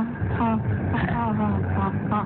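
Voices speaking in a Bengali radio drama, over a steady low hum.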